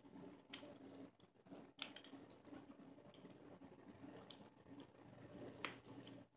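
Near silence with a few faint clicks and small handling noises as USB cables and connectors are plugged in. The sharpest click comes about two seconds in and another near the end.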